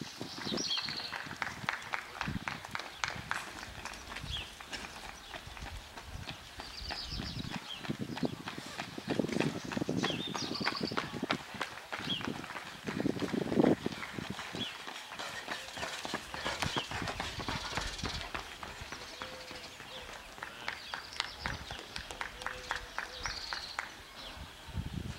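Runners' footsteps on an asphalt road, a quick, even patter of about three steps a second, with short bird chirps over it and a couple of brief voice-like bursts in the middle.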